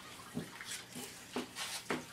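Water splashing and a cloth being handled, in a few short, irregular bursts.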